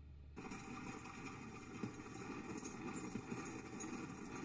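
Faint hoofbeats of galloping horses in the anime's soundtrack, starting suddenly about a third of a second in, heard as playback in a small room.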